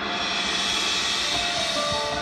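Marching band show music: a hissing, cymbal-like wash swells and then fades, with held tones coming in near the end.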